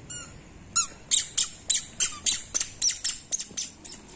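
A toddler's squeaky shoes chirping with each step, a quick run of short, high squeaks about three a second.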